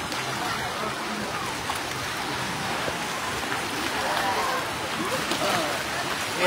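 Steady wash of water in a shallow wave pool, with faint voices of people in the pool behind it.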